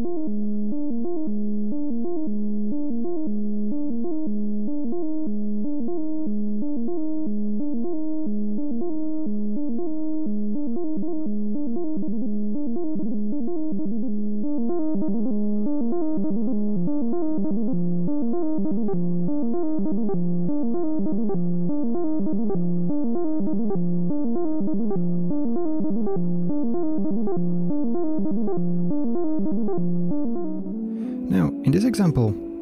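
Software modular synthesizer in VCV Rack playing a repeating sequence of quantized diatonic notes from its oscillator and filter, with the step order driven by an LFO scanning a sequential switch. About halfway through the pattern fills out with higher notes as more steps join the sequence.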